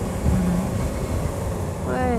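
Sport motorcycle engine running at low, steady revs off the throttle, under wind rush on the rider's helmet microphone.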